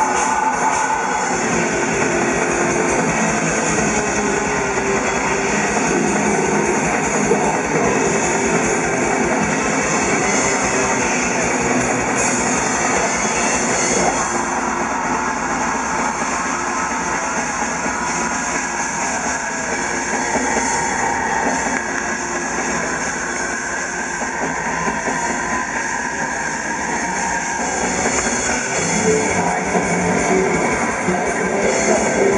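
A black metal band playing live through a PA, heard from the crowd: a dense wall of distorted electric guitars and bass over fast, unbroken drumming.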